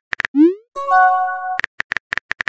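Texting-app sound effects: a quick run of keyboard tap clicks, then a short rising pop as a message is sent, followed by a held chime of several steady tones. The clicks start again near the end.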